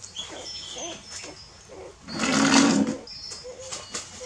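Nursing puppies squeaking and whimpering in short, faint calls. About two seconds in there is a louder, rough sound lasting under a second.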